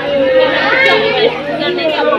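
A woman crying aloud in grief, her voice held and wavering in long cries, with people talking around her.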